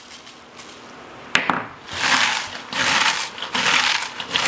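Hands squeezing and massaging shredded raw cabbage with salt in a mixing bowl: crisp, crackly crunching in repeated bursts, working the salt in to draw out the brine. A single sharp click comes a little over a second in, just before the crunching starts.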